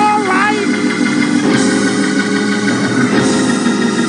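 Church organ holding sustained chords, with a man's voice singing over it briefly at the start.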